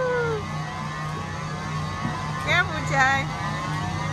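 Steady low machine hum, with two short wavering voice-like sounds about two and a half and three seconds in.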